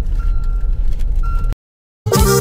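Car cabin noise while driving slowly on a wet dirt road: a steady low rumble, with a high electronic beep sounding twice, one long and one short. The sound cuts off to silence about one and a half seconds in.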